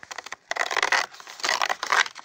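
Cardboard flap of a toy box being torn open: a dense crackling tear with many small snaps, a brief pause about half a second in, then a longer tear.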